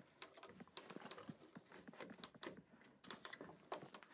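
Faint, irregular clicks and taps of a plastic 3D-printed jig and a hand clamp being fitted against a wooden shelf leg, with a couple of sharper knocks about three seconds in.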